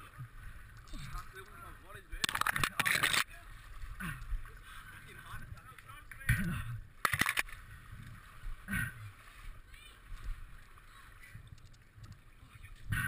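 Water sloshing and splashing as a person wades through shallow, moving water, with two louder rushing bursts about two seconds in and about seven seconds in.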